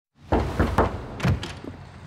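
Knocking on a front door: about four heavy knocks.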